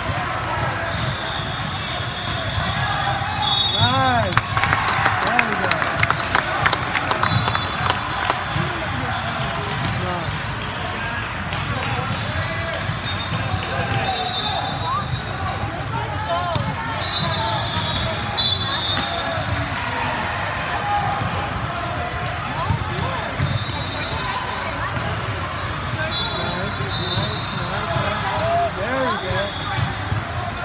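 Busy gym sound of a volleyball match on a hardwood court: a run of sharp ball hits and knocks about four to eight seconds in, short high sneaker squeaks recurring throughout, and indistinct players' and spectators' voices echoing in a large hall.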